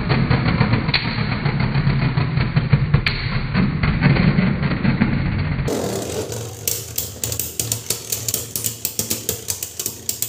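Beyblade Burst spinning tops, Dread Bahamut against a Phoenix, whirring and clattering against each other on a plastic stadium floor in a dense, continuous rattle. About six seconds in, the sound changes abruptly to a steady run of sharp clicks like a music beat.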